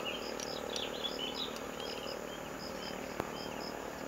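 Outdoor jungle ambience: an insect calling in short, high, evenly repeated pulses, two to three a second, over soft bird chirps. There is a single faint click about three seconds in.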